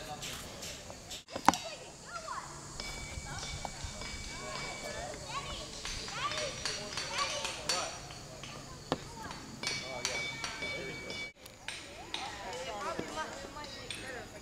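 Distant voices of children and adults carrying across an open rock field, with a sharp knock about a second and a half in and a smaller one near nine seconds. A steady high tone comes and goes twice.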